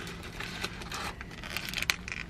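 Paper burger wrapper crinkling and rustling as the burger is lifted out of a cardboard tray: a run of small crackles, the sharpest one near the end.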